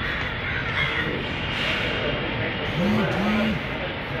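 Crowd noise: many people talking and shuffling in a packed hall. About three seconds in come two short calls, each rising and then falling in pitch.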